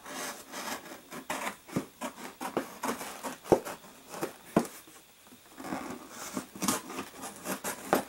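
Scissors cutting and scraping along the taped seam of a cardboard shipping box, with rustling cardboard and irregular clicks. Two sharper knocks come about three and a half and four and a half seconds in.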